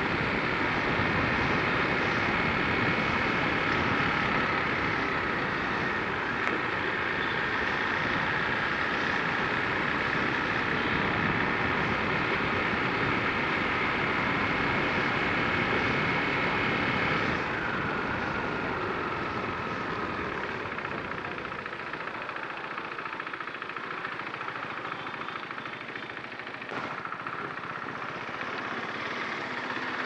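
Motorcycle engine and road noise while riding, with a steady high whine; a little over halfway the throttle is eased, the engine note drops and falls in pitch as the bike slows, then picks up slightly near the end.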